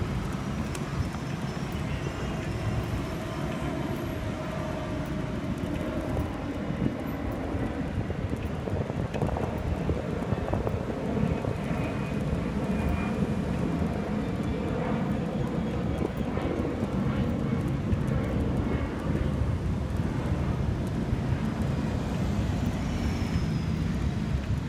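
Steady low rumble of city traffic and outdoor urban background noise, without any distinct events.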